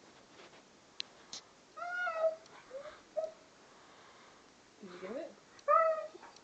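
Siberian husky whining in a handful of short high-pitched calls that bend up and down in pitch, the first about two seconds in and the last near the end, with one lower call rising in pitch just before it. Two sharp clicks come about a second in.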